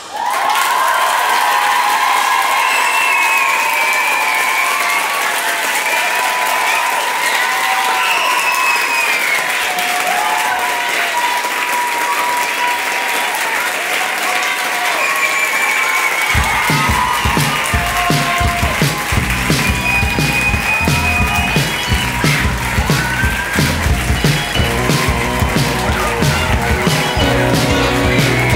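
Large audience applauding and cheering, with sustained dense clapping. About sixteen seconds in, music with a steady beat comes in under the applause.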